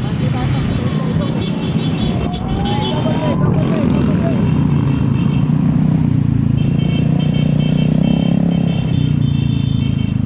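Motorcycle engines running steadily at road speed in a group ride, the nearby bikes loud and close. A pitch sweeps down and back up in the first few seconds, and rapid high beeping comes and goes.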